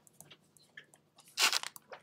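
Pen writing on paper: faint scratches and ticks of the strokes, with one louder scratchy burst about one and a half seconds in.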